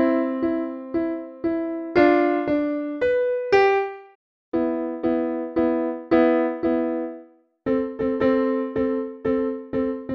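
Piano playing a simple passage of two-note chords in the middle register, struck about twice a second with two brief breaks, then more quickly near the end.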